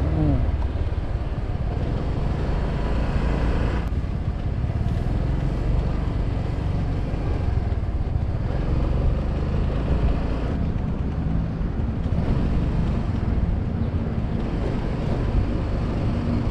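Yamaha Grand Filano Hybrid scooter on the move: its small engine running under a steady, even rumble of riding noise and wind on the microphone.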